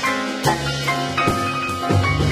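Live jazz combo playing a tango-flavoured tune: piano over bass and drum kit, with a few sharp drum strikes through the phrase.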